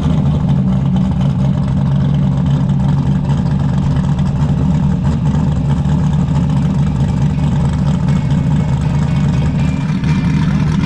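Modified V8 engine of a Chevrolet Nova idling steadily.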